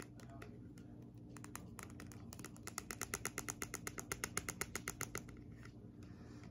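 A quick run of light clicks or taps, about seven a second, starting about two and a half seconds in and stopping about five seconds in, with a few scattered clicks before it.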